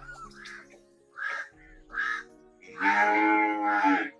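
A calf moos once near the end, a loud call lasting a little over a second, over background music with steady held notes. A few short calls come earlier.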